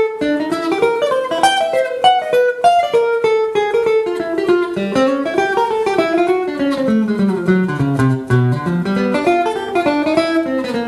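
Archtop acoustic guitar playing a jazz solo of quick single-note lines, with a run falling to the low strings about two-thirds of the way through.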